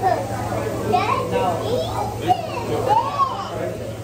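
Indistinct background voices in a busy restaurant dining room, some of them high-pitched and rising and falling in pitch, over a steady low hum.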